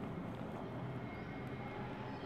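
Faint, steady background noise with no distinct events: the room tone and hum picked up by the narrator's microphone.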